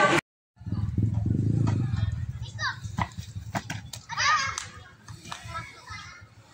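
Children shouting and calling to each other while playing a ball game, with a few sharp knocks among the shouts. The sound drops out for a split second at the start, and a low rumble fills the first couple of seconds.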